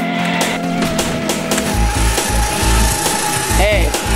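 An arcade ticket-redemption game's dispenser feeding out a strip of paper tickets with a rasping, ratcheting sound, over arcade music that picks up a heavy bass beat about two seconds in.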